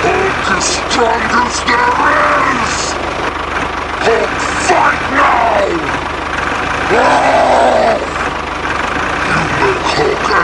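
Wordless voice shouts and growls, in several separate bursts, over a steady engine-idle sound effect for the toy tractor.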